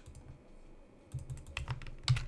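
Computer keyboard keys tapped several times, a quick run of short clicks starting about halfway through, as a colour code is pasted in.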